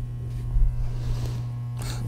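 A steady low electrical hum, with a faint hiss in the middle.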